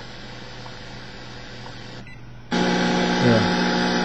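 Grundig 750 shortwave receiver giving faint steady static, dropping out for a moment about two seconds in as it is retuned, then a loud steady buzzing hum comes in: band noise on 10 MHz with no WWV signal to be heard.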